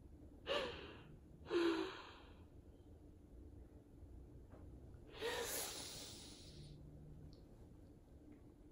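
A woman crying: two sharp, breathy sobs about a second apart, each catching briefly in the voice, then a longer sighing breath out about five seconds in.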